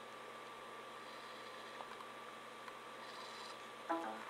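Faint steady room tone: a low hum with a light hiss, broken by a couple of tiny clicks.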